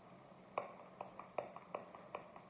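A deck of cards being handled and shuffled in the hands: a quick run of light card clicks, about six of them, starting about half a second in.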